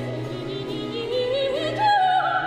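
A woman singing in operatic style with vibrato over a baroque string ensemble's sustained low accompaniment; her melody climbs and leaps higher near the end.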